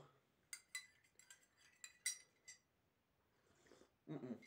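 Metal teaspoon clinking against a ceramic coffee mug while stirring: several light, ringing clinks in the first two and a half seconds, then quiet.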